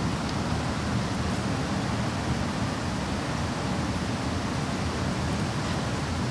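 Steady background noise: an even hiss over a low rumble.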